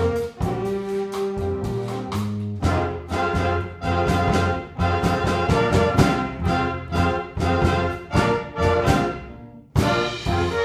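A jazz big band with saxophones, trombones, trumpets, drum kit and Latin hand percussion plays a cha-cha-cha groove. It opens with held chords for a couple of seconds, then moves into a run of short, punchy accented hits. The band breaks off briefly just before the end.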